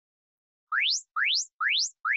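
Electronic workout-timer cue: three quick rising electronic sweeps, each climbing steeply in pitch, with a fourth beginning at the end. They signal the start of a work interval.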